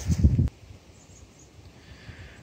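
Low rumbling handling and wind noise on a phone microphone as it is swung down, cutting off suddenly about half a second in. After that only a faint, steady hiss.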